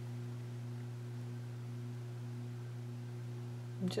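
A steady low electrical hum, one unchanging drone with fainter higher tones above it, and nothing else; a woman's voice starts right at the end.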